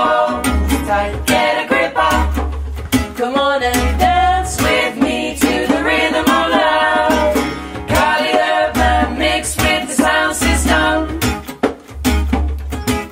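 A choir singing a reggae song in harmony, with acoustic guitar strumming and a pulsing bass line.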